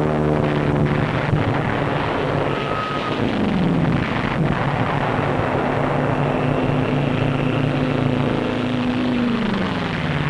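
Propeller warplane engines droning steadily, with the pitch dropping twice as planes sweep past, about three seconds in and again near the end. A few sharp thumps of explosions come about a second in and at about four seconds.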